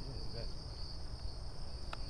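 A steady, high-pitched chorus of crickets, with a low rumble underneath and a single sharp click near the end.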